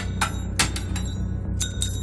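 A grenade's metal pull ring and pin dropping onto a concrete floor, clinking several times with a short metallic ring as it bounces and settles. A low steady drone runs underneath.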